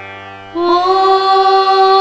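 Tamil devotional song in Carnatic style: after a brief soft lull, a singer holds one long steady note from about half a second in, over a low steady drone.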